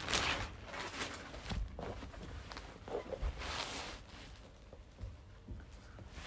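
Rustling of packaging as a cloth dust bag and its wrapping are handled: several noisy swishes, the loudest right at the start, with a soft thump a little after three seconds.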